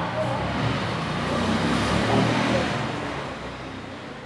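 A ball rolling across a hard stone floor: a low rumble that builds to its loudest about two seconds in, then fades.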